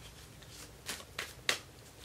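A deck of tarot cards being shuffled by hand. Three short sharp card clicks come in the second half, with a softer one just before them.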